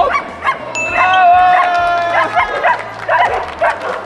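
Dogs barking in quick, high-pitched yaps, several a second, with one longer held note about a second in.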